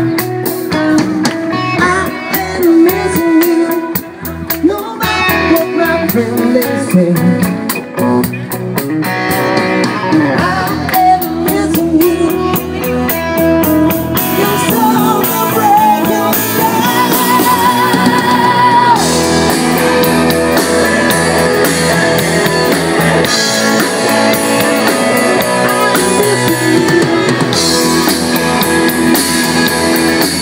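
Live rock band playing: electric guitars with drum kit and bass. The sound fills out about halfway through, and a long wavering note is held a little past the middle.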